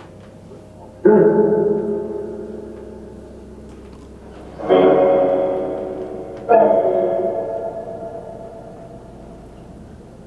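Three loud echoing, ringing pitched sounds, about a second in, near the middle and a little later. Each starts suddenly and fades away over about two seconds.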